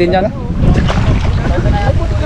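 Wind buffeting the microphone with water sloshing as a person moves through a muddy river, a dense low rumble throughout, with brief voices.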